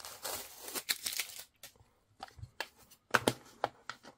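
Paper wrapping torn and peeled off a cardboard tube, a rustling tear for about a second and a half. It is followed by a handful of sharp clicks and knocks as a small plastic pen box is handled and opened.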